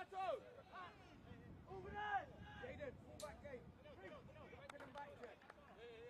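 Faint voices of footballers calling and shouting across an open pitch, with one short sharp knock about three seconds in.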